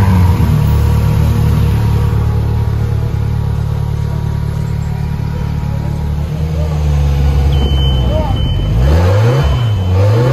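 Motorcycle engine running steadily, then near the end its pitch falls and climbs again as it is revved.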